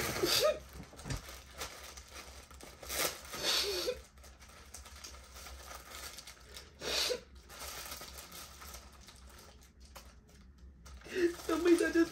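Plastic wrapping crinkling and rustling as it is handled, with a few short voiced sounds in the first few seconds; about eleven seconds in, a woman starts crying aloud.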